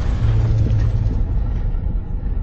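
Deep, steady low rumble of a cinematic sound effect, its higher hiss fading away.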